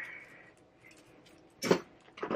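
Gold bangles being handled on the wrist: a faint metallic ring fades away, then one sharp click near the end as a hinged bangle's clasp is worked.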